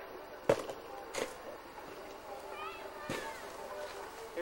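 A sharp knock about half a second in, the loudest sound here, followed by two fainter knocks, one soon after and one near the end.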